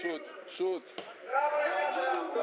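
Men's voices calling out, with a single sharp thud of a football being kicked about a second in.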